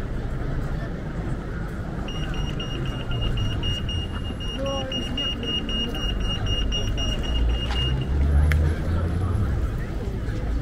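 Pedestrian crossing signal bleeping: a rapid run of high-pitched bleeps that starts about two seconds in and stops about two seconds before the end, signalling that it is safe to cross. Passers-by talk and traffic rumbles underneath.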